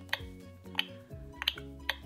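Light background music with four sharp clicks, as a plastic feeding spoon taps against a Baby Alive doll's hard plastic mouth.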